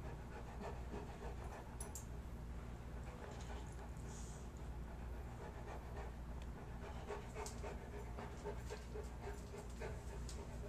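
A Saint Bernard panting steadily, with a few faint clicks in the second half.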